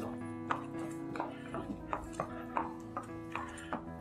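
Background music with long held notes, over hoofbeats on a concrete floor, about two or three a second, from a mare and her foal walking.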